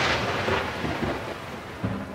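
Thunder sound effect: a loud crash of rumbling noise that fades away over about three seconds, with a short thud near the end.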